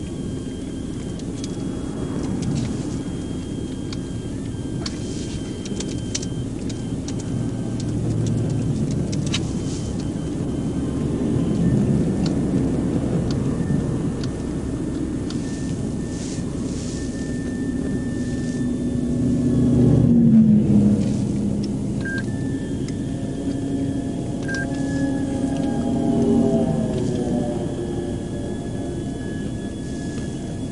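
Highway traffic passing a car parked on the shoulder, over a steady low rumble. The loudest pass comes about twenty seconds in, its pitch dropping as it goes by. Another vehicle's engine note rises and falls near the end.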